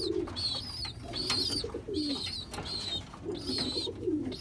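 Domestic pigeons cooing repeatedly, short low falling calls every half second to a second. A thin high chirping repeats over them.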